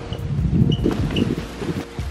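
Wind buffeting the microphone, with irregular knocks and rustles as a large canvas is handled and carried, and a few short high chirps in the first second or so.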